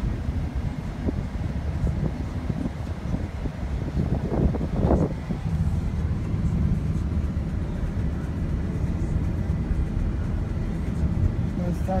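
Steady low rumble of road and engine noise inside a moving car's cabin, with a brief louder surge about four to five seconds in.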